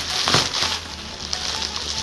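Clear plastic zip bag crinkling and rustling as it is handled, louder in the first half second or so, then softer.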